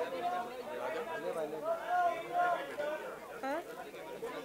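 Several people talking over one another: crowd chatter in a large hall.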